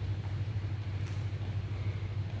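A steady low mechanical hum, with a faint soft knock about a second in.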